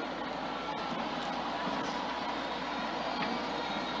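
Faint, steady crowd noise from a seated audience, with scattered clapping.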